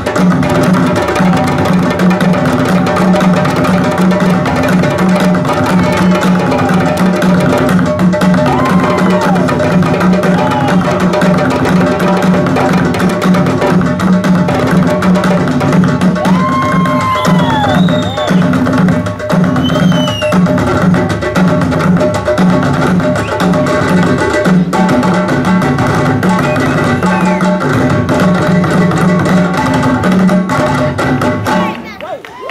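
Loud, steady drum-driven music with hand drums and wood-block-like percussion, with a few short sliding high notes over it around the middle.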